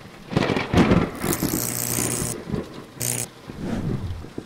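Intro-sting sound effects: a rumbling, noisy swell with hissing whooshes, and a low steady hum that comes in for about a second and again briefly near the end.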